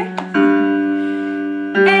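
A piano chord from a vocal warm-up backing track, held for about a second and a half and slowly fading. It sets the starting pitch for the next, higher run of the sung five-note scale. A woman's singing stops just before the chord and starts again near the end.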